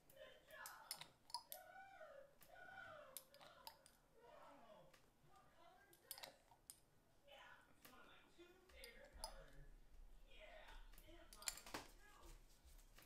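Faint, scattered clicks and taps of a glass dropper working in an amber essential-oil bottle as peppermint oil is dispensed, with a quick cluster of louder clicks near the end.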